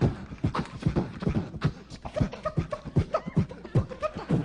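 Beatboxing into a handheld microphone: a quick run of mouth-made kick and snare beats, about four a second, with a few short pitched pops.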